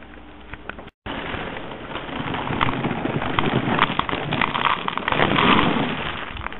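Small dry hoop-shaped pieces poured into a bowl, a dense rattling patter of many pieces landing. It starts after a brief dropout about a second in and gets a little louder near the end.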